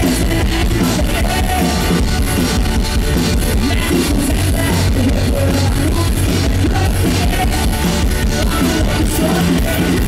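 Live amplified rock band playing: electric guitars, drum kit and keyboards, steady and loud throughout.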